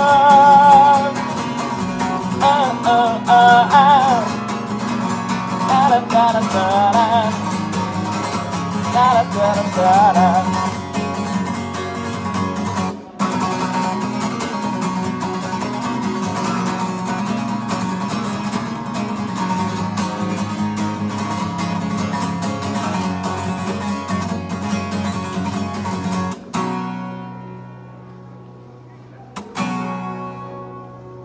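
Acoustic guitar strummed steadily through the song's closing instrumental, with a wavering wordless vocal line over it for about the first ten seconds. The playing stops about 26 seconds in and the last chord fades out, with a short knock near the end.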